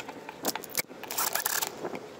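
A flat metal bar being handled and slid into place on a wooden board: a couple of sharp knocks, then a metallic scrape.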